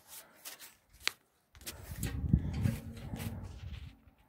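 Close handling and rubbing noise as a jumper wire is bent and worked in among the tractor's wiring: a sharp click about a second in, then a low rustling rumble that stops just before the end.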